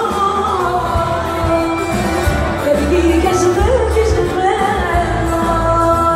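Live Greek smyrneika song: singing with long held notes over a band with a deep bass, heard from among the audience.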